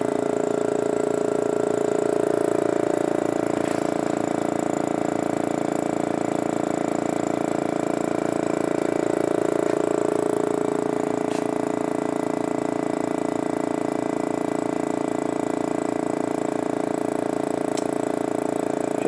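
KNF UN820.3 oil-free dual diaphragm vacuum pump running steadily, a constant hum with a fast, even pulse, as it pumps down a vacuum oven chamber.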